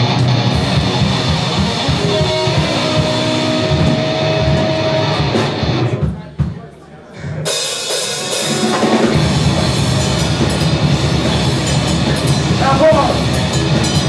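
Live rock band playing loud through a club PA: electric guitars, bass and drum kit. About six seconds in the playing breaks off briefly, then the full band comes back in.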